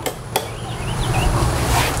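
Two sharp clicks, then rustling and low rumbling from movement close to the microphone that grows louder toward the end, with a few faint high chirps in the middle.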